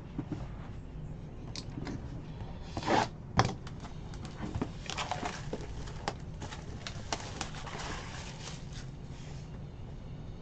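A cardboard Panini Court Kings trading-card hobby box being handled and opened by hand: irregular tearing, crinkling and scraping of its wrapping and cardboard, with two sharper cracks about three seconds in.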